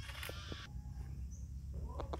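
A short, high-pitched animal call in the first half-second, followed by a couple of faint clicks over a low, steady background rumble.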